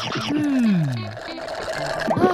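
Cartoon background music for children, with a single sliding tone that glides steadily down in pitch over about a second near the start.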